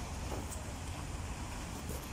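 Wind buffeting a handheld camera's microphone, a steady low rumble, over faint open-air ambience with a few distant voices.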